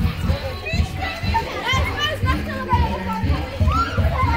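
Music with a steady beat, with many young voices shouting and calling over it.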